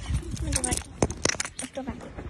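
Metal jingling and clinking from a small dog's leash and collar hardware as the dog moves about, in a quick irregular cluster of small clinks.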